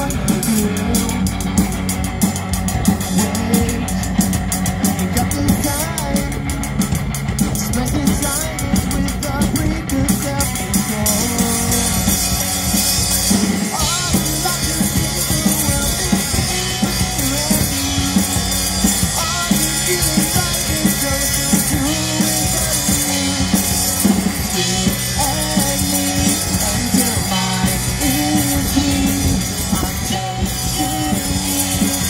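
Live amplified rock band playing: electric guitars, bass guitar and a drum kit, with a steady drum beat.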